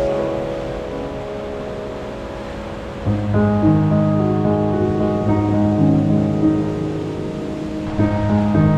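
Background music of long-held keyboard chords. The chords fade a little, then a louder chord comes in about three seconds in.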